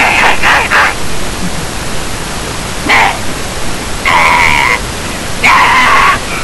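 A young man yelling in short loud bursts, four times, over a steady noisy hiss inside a vehicle.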